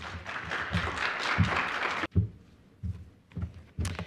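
Audience applauding for about two seconds before it cuts off abruptly, followed by a few soft low thumps.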